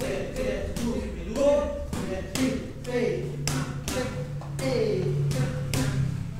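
Boxing gloves striking focus mitts in a steady run of punches, about two sharp smacks a second.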